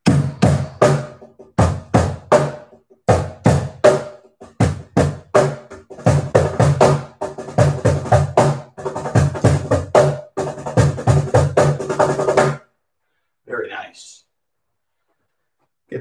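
Cajón box drum played by hand in a rhythmic pattern of deep bass hits and sharp slaps, the strokes coming faster and closer together in the second half, then stopping about three-quarters of the way through.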